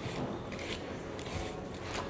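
A hand vegetable peeler scraping strips of skin off a raw sweet potato, in several quick rasping strokes.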